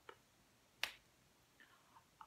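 Near silence with one short, sharp click a little under a second in, and a fainter tick just at the start.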